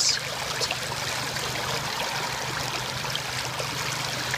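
Shallow creek water running over stones, a steady, even flow.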